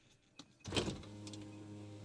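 Faint sounds inside a car: a brief whir a little over half a second in, then a steady low hum.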